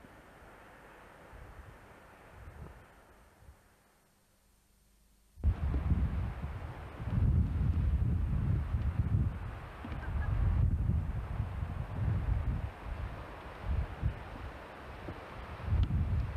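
Faint outdoor sound that dies away to near silence. About a third of the way in, loud gusting wind starts buffeting the camcorder microphone, a low rumble that surges and drops unevenly.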